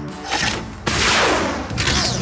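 Cartoon sound effect of a small drone launching from its mount and flying off: a short rush, then a loud sustained whoosh from about a second in. Steady background music runs underneath.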